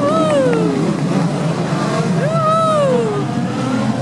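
Dirt-track race cars' engines running steadily in the background, with a person's voice calling out twice over them, each a long call that rises and then falls.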